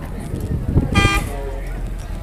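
A vehicle horn gives one short, high toot about a second in, over the low rumble and voices of a busy cattle market.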